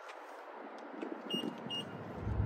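Two short, high electronic beeps about half a second apart, over a faint background hiss.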